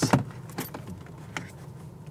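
Handling noise of a phone being moved around close to a car's dashboard. There is a sharp click right at the start, a couple of fainter clicks and rustles later on, and a faint steady hiss of the quiet cabin underneath.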